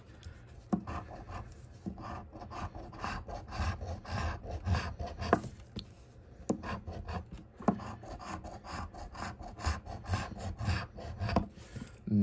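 A coin scraping the coating off a paper scratch-off lottery ticket: many quick rasping strokes in irregular runs, close to the microphone.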